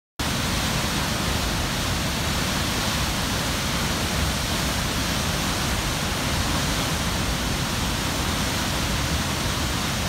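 Steady rushing of Murchison Falls, the Nile pouring through its narrow gorge, starting abruptly just after the beginning.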